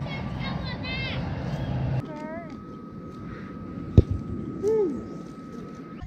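Young children shouting and squealing in play, in high, sweeping calls. A low rumble runs under the first two seconds and stops abruptly, and one sharp knock comes about four seconds in.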